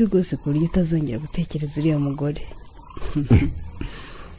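A low-pitched man's voice in a run of short, evenly spaced syllables, about four a second, for the first two seconds or so, then quieter with one brief vocal sound a little past three seconds.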